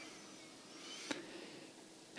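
Quiet room tone with a faint click about a second in.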